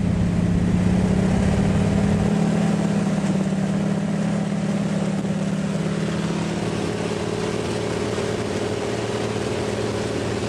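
Small propeller plane's engine droning steadily, heard from inside the cockpit. About two seconds in the deepest rumble drops away, and a higher tone comes up about seven seconds in.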